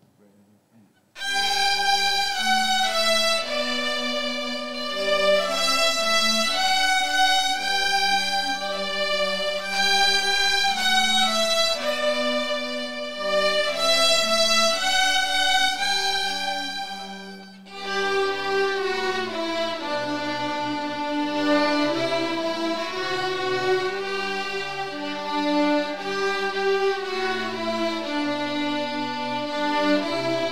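Beginner string orchestra of children's violins and cellos playing a piece together. The playing starts about a second in, dips briefly just past halfway, then carries on.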